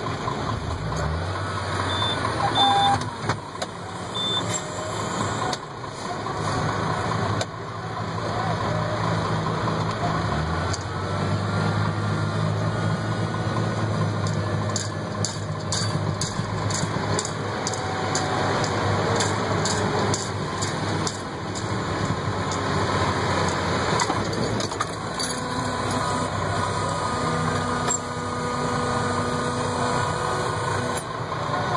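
Tractor engine running, heard from inside the cab, its note shifting up and down several times as the engine speed changes.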